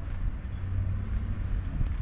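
Steady low rumble of city street noise.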